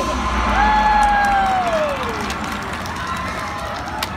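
Audience cheering and applauding as a pop song finishes, with one long vocal call that slides down in pitch, the crowd noise slowly dying down.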